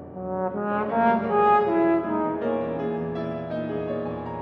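Bass trombone comes in about half a second in and plays a phrase of several notes, loudest about a second and a half in, over grand piano accompaniment.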